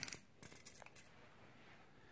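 Near silence: room tone, with a few faint clicks in the first second.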